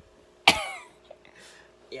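A man coughs once, sharply, about half a second in.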